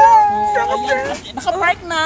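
A person's voice: a high, drawn-out call held steady for about a second, followed by shorter playful vocal sounds.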